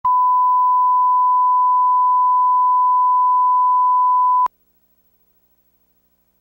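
A steady 1 kHz line-up test tone, the reference tone that accompanies colour bars, held at one pitch and cutting off suddenly about four and a half seconds in.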